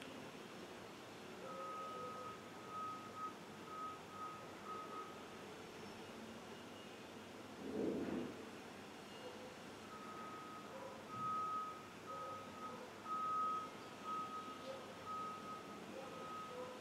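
Faint beeping at one steady pitch, in uneven pulses, heard in two stretches with a gap in the middle, over a quiet room. A short soft rustle about eight seconds in.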